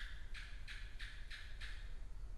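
Faint scratching strokes of a stylus writing on a tablet, about six short strokes at roughly three a second, over a low steady hum.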